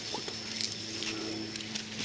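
Leafy branches rustling close to the microphone as they brush past, over a faint steady high tone.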